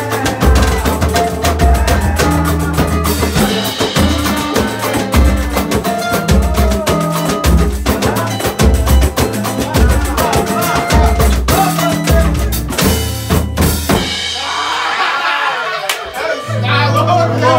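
A band playing loud music: drum kit and hand percussion hits over a steady bass line, with plucked strings. It cuts in suddenly, stops about two seconds before the end, and voices follow.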